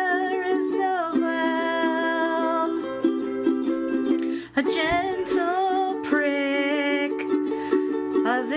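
A woman sings in long, held notes over strummed electric ukulele chords, with a brief drop about four and a half seconds in.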